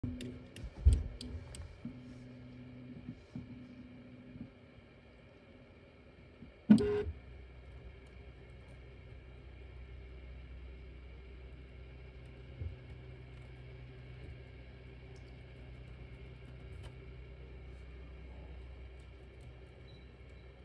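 Cooling fans of an idle Ender 3 V2 3D printer running steadily with a low hum. There are a few sharp clicks in the first couple of seconds and a single loud knock about seven seconds in.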